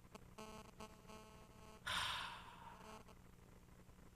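A man's breathy sigh into a close studio microphone about two seconds in, fading out within a second, over a faint steady electrical buzz.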